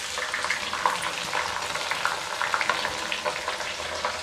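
Chopped onions frying in hot mustard oil in a steel kadhai, a steady sizzle full of small crackles, just after the onions have gone into the oil with garlic-ginger paste.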